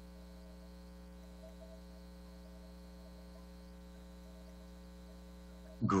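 Faint steady electrical mains hum with a stack of overtones, unchanging throughout.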